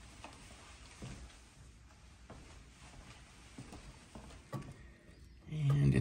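Near quiet: a faint steady hiss with a few soft ticks, then a man's voice starts just before the end.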